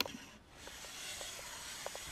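A sharp click, then a steady rasping hiss from about half a second in as a Swix second-cut file, held in an 88-degree edge guide, is drawn in a long, even stroke along the steel side edge of a ski.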